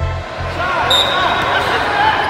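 Indoor basketball gym sound: sneakers squeaking on the hardwood court, with a ball bouncing and indistinct voices. The backing music's bass beat drops out just after the start.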